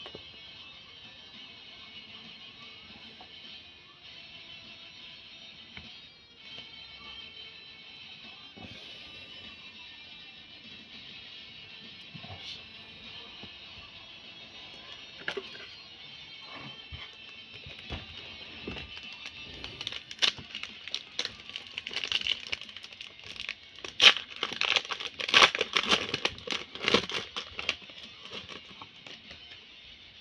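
Background music throughout; in the second half, a run of loud crinkles and crackles from a foil Pokémon booster pack being handled, loudest a few seconds from the end.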